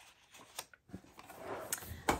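Soft rustling of paper sheets being handled over a metal pencil tin. It grows in the second half, with a light click about three-quarters of the way through.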